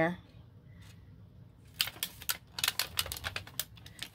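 Light clicking taps as hands press and pat a clear plastic stamp down onto a paper journal page, an irregular run of them starting about halfway through.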